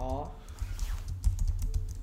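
Typing on a computer keyboard: a quick run of keystrokes.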